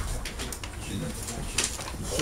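A low murmuring voice with a few soft knocks and rustles as people move past close to the microphone.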